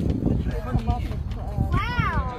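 People's voices talking over a heavy, steady low rumble of wind buffeting the phone microphone; near the end one voice rises and falls in a drawn-out exclamation.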